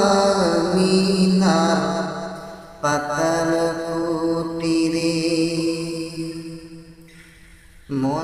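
A man's solo voice singing a Bengali naat (Islamic devotional song), drawing out long held notes with no words: one note fades out, a new long note starts about three seconds in and slowly dies away near the end.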